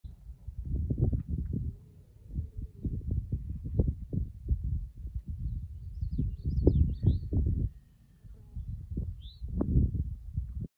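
Wind buffeting the microphone in uneven low gusts that swell and drop. A bird chirps a few times about six to seven seconds in and once more near the end.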